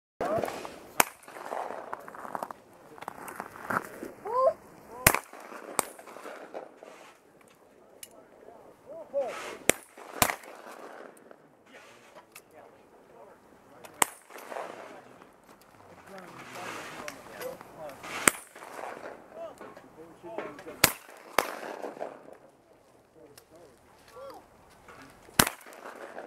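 Shotguns firing at clay targets on a trap line: about ten sharp reports spread through, some in quick pairs about half a second apart.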